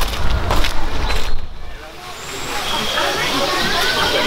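Low rumble of wind and handling on a handheld microphone while walking on a dirt path, with step-like knocks, for the first half. After a short lull, a busy background of indistinct voices takes over.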